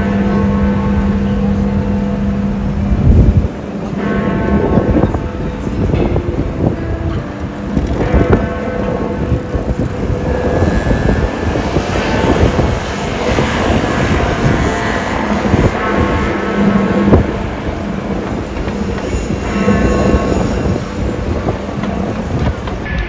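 Big Ben, the great hour bell of the Elizabeth Tower clock, striking the hour at six o'clock. Each stroke rings on deep and long, and a new stroke comes every few seconds over steady street noise.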